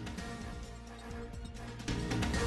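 Television news theme music playing over the closing titles; it gets louder just before the end.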